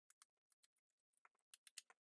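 Faint, irregular light taps and dabs of a foam-tipped sponge stylus pouncing ink from an ink pad onto the edges of a paper strip, a little busier near the end.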